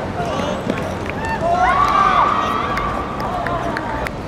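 Players' and onlookers' voices calling out after a penalty goes in, with one long raised shout starting about a second and a half in.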